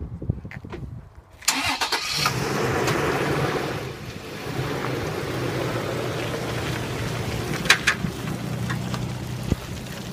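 Toyota Tacoma pickup's engine cranking and catching about a second and a half in, then idling steadily, with a couple of sharp clicks near the end.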